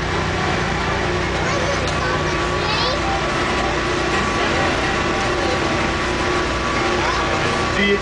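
Steady rumble and hum of a moving passenger train car heard from inside the coach, with faint passenger voices in the background.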